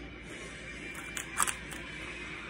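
Crinkling and crackling of a push-up ice pop's paper lid being peeled off its cardboard tube: a short cluster of sharp crackles starting about a second in.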